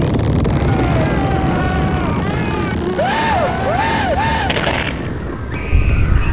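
Rocket-thrust sound effect of an animated alien spaceship lifting off: a steady deep rumble, with a run of warbling tones that rise and fall about halfway through. A sudden loud bang comes near the end.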